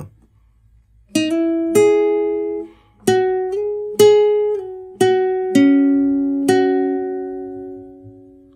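Nylon-string classical guitar (Eagle MN860, capo at the second fret) playing a slow single-note melody on the upper strings: about seven plucked notes, with slides carrying the pitch up and then back down between notes. The last notes ring on and fade out near the end.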